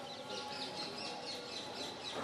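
Birds chirping: a quick, steady run of short, high, falling chirps heard faintly.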